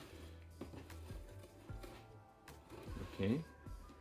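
Quiet background music, with a few faint clicks and knocks of a cardboard box and twine being handled while the twine is threaded through holes in the box's side.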